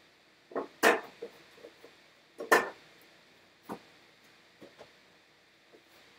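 Several sharp knocks and clatters of items being moved around inside a refrigerator, the two loudest about a second in and two and a half seconds in.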